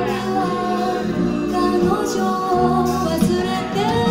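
Recorded music played by a DJ from vinyl on turntables through a club sound system: a track with singing held over a steady bass line.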